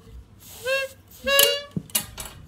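Toy saxophone blown twice: two short notes, the second louder and a little higher than the first, followed by a couple of clicks.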